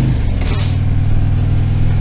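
Harley-Davidson touring motorcycle's V-twin engine running on the road with wind rush; the engine note drops in pitch just after the start, then holds steady.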